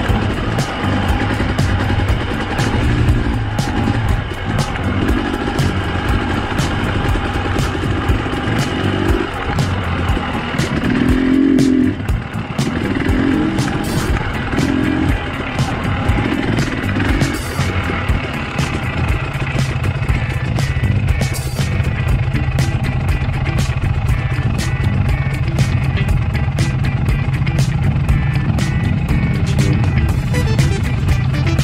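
Husqvarna fuel-injected two-stroke dirt bike engine ridden along a trail, its revs rising and falling, with frequent clicks and rattles from the bumpy ride. For about the last third it settles into a steady low note.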